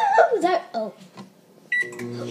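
A child's excited shout, then near the end a microwave oven's single short beep as it is started, with its running hum setting in right after.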